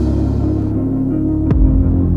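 Dark, sustained low music drone with a single deep drum hit about three-quarters of the way through.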